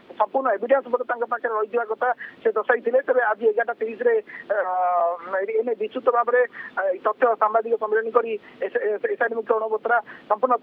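Speech only: a man reporting in Odia over a telephone line, his voice thin and phone-quality.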